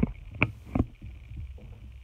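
Handling noise from a camera being moved and repositioned: three short knocks in the first second over a low rumble.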